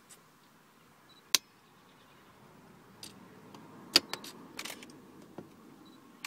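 Optical fibre cleaver being worked by hand: two sharp clicks, about a second and a half and four seconds in, with a few fainter clicks and handling noise around them, as its clamps and lid are snapped shut on the fibre.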